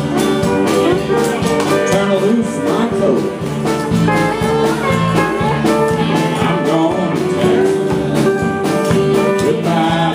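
Live band playing a song on acoustic and electric guitars, with singing.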